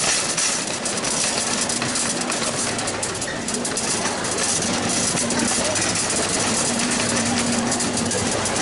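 Busy supermarket ambience: a wire shopping cart rattling steadily as it is pushed over a tiled floor, under indistinct chatter of shoppers and a faint steady hum.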